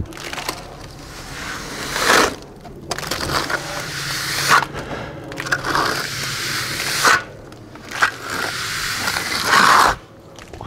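A plasterer's darby scraping across a fresh, still-soft stucco base coat in repeated long strokes. It is truing the coat flush and plumb, cutting down the high spots.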